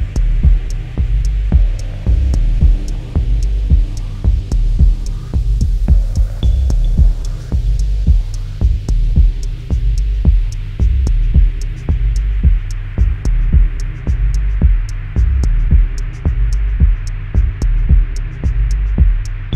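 Dub techno track: a deep, steady kick drum thumps about twice a second under a low droning bass pad, with evenly spaced high hi-hat ticks above.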